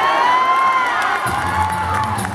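Concert audience cheering, with high gliding whoops and shouts. About a second in, low sustained sung bass notes from the a cappella group start underneath as the song begins.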